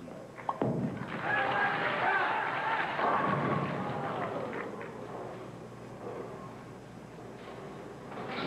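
A bowling ball lands on the lane with a thud about half a second in, then rolls into the pins and knocks down all but the 3 and 6 pins, with arena crowd voices rising and fading over the next few seconds.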